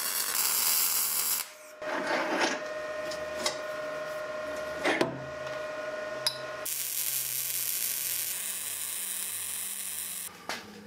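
MIG welder arc crackling on a steel-tube go-kart frame in two runs: a short one at the start and a longer one from about seven seconds in. Between them, a steady hum with a few light knocks.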